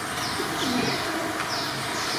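Birds calling: short, high, falling chirps repeated about twice a second, with lower, deeper calls underneath.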